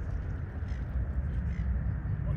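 Steady low rumble of a jet airliner climbing away in the distance, with a few faint bird calls over it.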